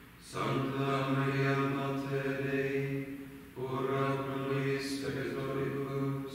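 Men's voices chanting on a single reciting note in the office of Vespers, in two long phrases with a short breath about three and a half seconds in.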